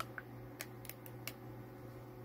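Plastic screw cap of a Gatorade Fast Twitch bottle being twisted open: a quick run of small sharp clicks over about a second and a half.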